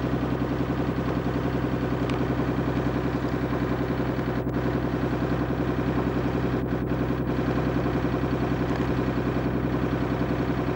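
A boat's engine running steadily under way, an even low drone with a fine regular pulse.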